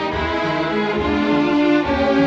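String chamber orchestra playing: violins, cellos and double basses bowing held notes, moving to a new chord near the end.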